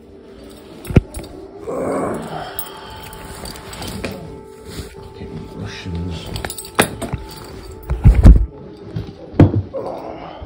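Air raid siren holding a steady tone through the night air, under knocks and rustles of something handled in the dark; the loudest thumps come about eight seconds in.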